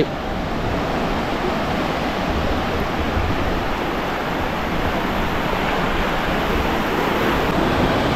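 Sea surf breaking and washing over shallow sand, a steady, loud rush of waves.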